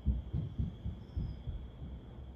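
Irregular low, muffled thumps, several a second, with a faint steady high tone running under them.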